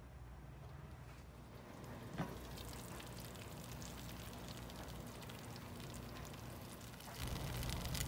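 Faint crackling simmer of chicken in cream gravy in a hot slow cooker, with one sharp click about two seconds in.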